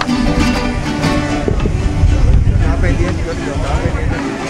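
A string ensemble of small strummed guitars with a drum plays for about the first second and a half. Then a loud low rumble and voices take over.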